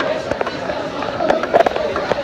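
Busy restaurant din of people's voices, broken by a few sharp knocks and clatters, the loudest bunched together about three-quarters of the way through.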